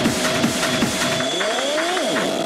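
Hard techno (schranz) DJ mix playing over the speakers with a fast, pounding kick drum. About a second in, the kick and bass drop out and a rising synth sweep builds.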